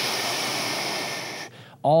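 A man blowing a long, forceful breath out through his mouth, a steady rush of breath lasting about a second and a half before it fades, a deliberate exhale held during a stretch.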